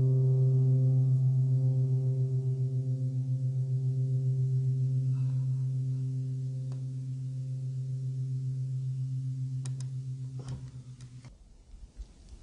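A steady, low-pitched drone with a fast, even pulsing fades slowly over about ten seconds and cuts off abruptly near the end, with a few sharp clicks just before it stops.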